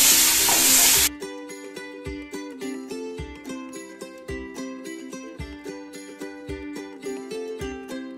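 Onions and tomatoes sizzling in hot oil as a spatula stirs them in the pan. The sizzle cuts off suddenly about a second in, giving way to light background music of plucked strings with an even beat.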